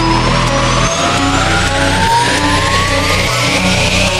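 Slowed electronic track in a build-up: a rising noise sweep and a slowly rising synth tone over held synth chords. The bass drops out about a second in.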